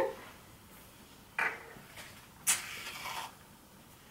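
Aerosol can of curl mousse being dispensed into a hand: a short hiss of foam about two and a half seconds in, lasting under a second, with a brief sharper sound about a second before it.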